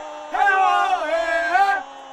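A man's voice chanting a sing-song football taunt, one long drawn-out phrase, over a faint steady hum.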